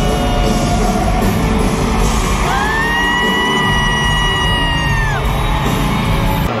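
Live regional Mexican band music playing through an arena's sound system, with a long held sung note from about two and a half seconds in until about five seconds.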